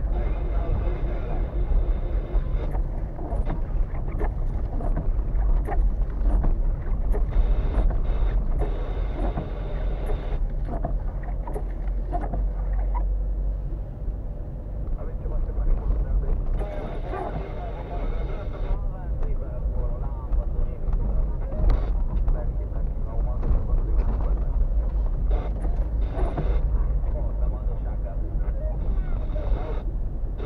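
Car cabin noise while driving slowly over a rough, potholed road: a steady low rumble of engine and tyres, with frequent small knocks and rattles from the car jolting over the broken surface.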